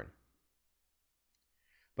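A pause in a spoken conversation: a man's voice trails off, then near silence with one faint click a little past the middle and a soft faint noise just before the next voice comes in.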